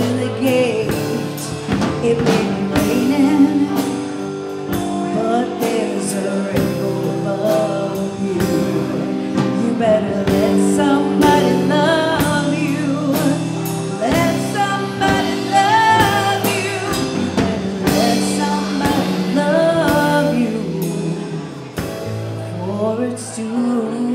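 Live band playing a song: a lead vocalist singing over keyboard chords, electric guitars and a drum kit. The recording levels were set too hot, so the sound is overloaded.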